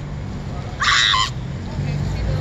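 A girl's short high-pitched scream from inside a car, lasting about half a second, a little under a second in.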